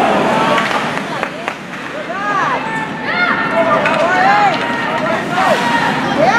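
Spectators' raised voices calling out in an echoing ice arena, over the steady scrape of skates on ice. There are a couple of sharp hockey stick and puck clacks about a second in, and the calling picks up from about two seconds in.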